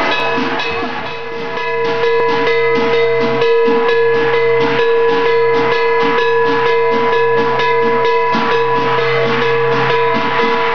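Percussion accompanying a Chinese qilin dance: a drum and cymbals beating a steady rhythm of about three to four strokes a second, over a continuous metallic ringing. There is a brief dip in loudness about a second in.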